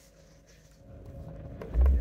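Massage motor in a bus seat starting up near the end: a sudden loud, very low rumble as the massage kicks in, after a quiet stretch with only a faint steady hum.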